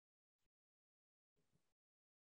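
Near silence, broken only by two very faint, brief bursts of noise.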